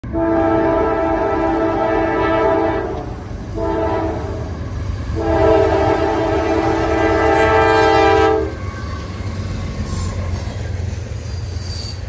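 Nathan Airchime K5LA five-chime horn on a CSX GE AC4400CW freight locomotive blowing three blasts: long, short, long. After the horn stops, the passing train rumbles and its freight cars clatter by.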